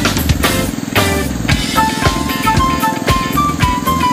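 Background music with a steady beat and a simple melody line, over a continuous low drone.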